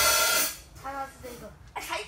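A drum-kit cymbal struck once, its wash ringing out and fading over about half a second.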